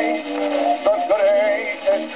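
An early 78 rpm gramophone record of a music-hall song playing: a baritone voice sings with a wide vibrato over band accompaniment, with held notes and a wavering sung line from about halfway in. The sound is thin and narrow, with no bass and nothing high, as on an acoustic-era disc.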